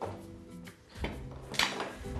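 Soft background music, with a few light clacks of a round plastic garlic chopper being pulled apart and set down on a cutting board, the sharpest one a little past halfway.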